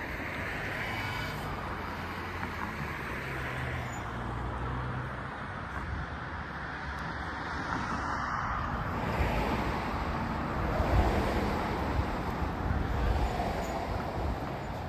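Road traffic: motor vehicles running on a nearby road, a steady hum that grows louder from about nine seconds in as a vehicle passes.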